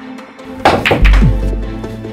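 Background music with an edited dramatic sound-effect hit: a sharp whoosh just over half a second in, then a deep boom about a second in that slowly dies away.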